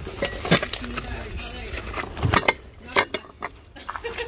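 Household items being handled: several sharp clinks and knocks of dishes and ceramic or glass objects being moved, with faint voices in the background.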